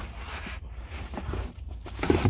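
Rustling and light knocking of items being moved around by hand inside a plastic storage tote, over a low rumble of handling noise on the phone microphone.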